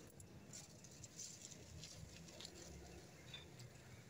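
Near silence with faint, scattered light taps and ticks.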